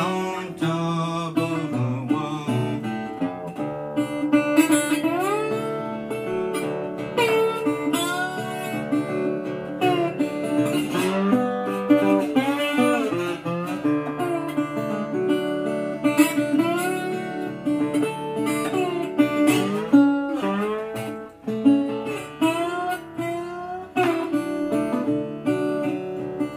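Resonator guitar played bottleneck in open D tuning (DADF#AD): an instrumental slide break, with notes gliding up and down the strings over fingerpicked bass notes.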